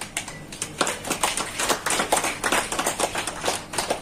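Scattered applause: a small audience clapping unevenly, many separate claps a second.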